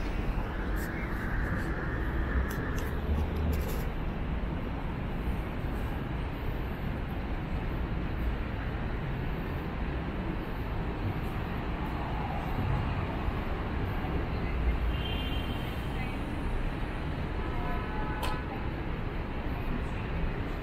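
City street ambience: a steady rumble of traffic with the voices of passersby and a few short pitched sounds around three-quarters of the way through.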